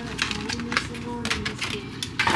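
Clear plastic blister pack of an eyeliner pencil being handled and pried open: a rapid, irregular run of small plastic clicks and crackles.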